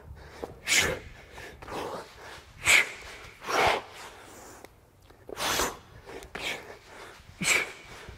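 A man's hard breathing under exertion: short, forceful exhales and gasping inhales about once a second as he works through burpees and club swings.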